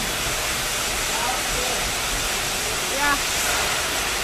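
Pretty loud, steady din of candy-factory production machinery on the factory floor: an even wash of noise with no distinct beats or strokes.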